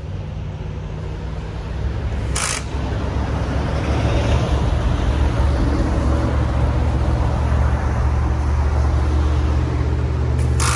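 Highway traffic beside the road: a steady low rumble that grows louder a few seconds in, with one short sharp noise about two and a half seconds in.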